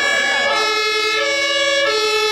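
Vocal ensemble singing long held notes together, several voices at different pitches, each voice moving to a new note in steps about every half second to a second.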